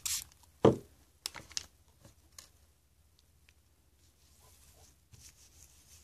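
A single sharp knock a little under a second in, as a small plastic spray bottle is set down on a tabletop, followed by a few faint taps and rustles of hands on the table. Then mostly quiet.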